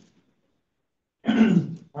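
A man clears his throat once, briefly, a little over a second in, after about a second of near silence.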